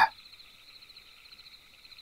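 Faint, steady chorus of night insects such as crickets, a continuous high, finely pulsing trill used as a background ambience bed.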